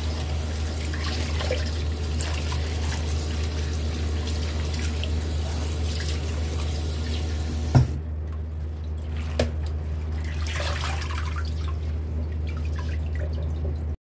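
Tap water running into a stainless steel bowl of red spinach leaves, with a sharp knock about eight seconds in. After it the rush of water is quieter and softer splashing goes on as the leaves are swished in the bowl.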